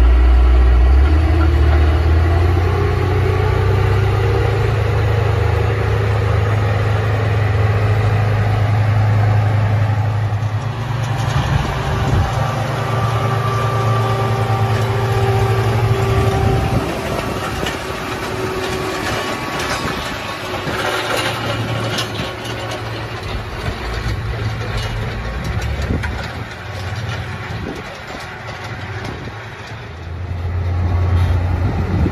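Komatsu GD655 motor grader's diesel engine working, a steady low drone with rougher, gritty noise through the middle of the stretch. About halfway through, the engine drone drops in level and stays lower.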